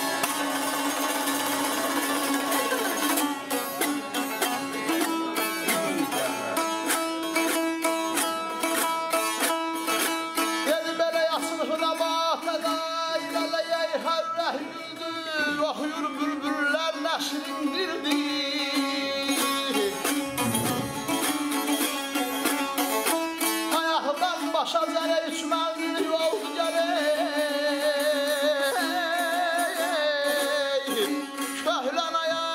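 Azerbaijani ashiq saz strummed in a fast, dense rhythm over a steady drone, joined by a man's singing from about the middle on.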